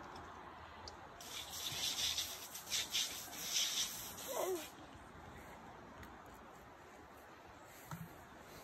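Knife scraping and cutting at the head of a whole albacore tuna as the eye is dug out: a run of faint rasping scrapes from about a second in until nearly five seconds, then quiet.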